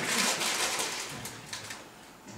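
Crinkling and rustling of a plastic sweet packet of jelly babies being torn open and handled, a crackly rustle that fades out over the second half.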